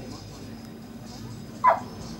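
A dog gives a single short bark, about one and a half seconds in, over faint background voices.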